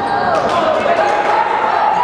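Basketball game sounds on a hardwood gym floor: the ball and players' sneakers on the court, with voices.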